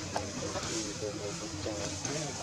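Indistinct, distant voices over a steady outdoor hiss, with one sharp click near the start.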